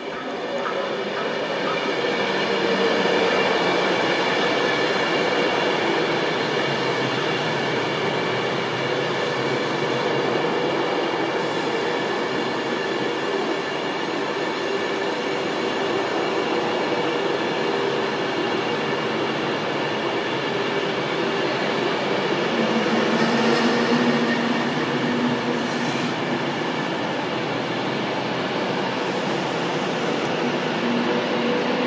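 Avanti West Coast Class 390 Pendolino electric multiple unit running slowly past the platform. A steady whine of several tones sits over continuous wheel-on-rail rumble, swelling a little about three-quarters of the way through.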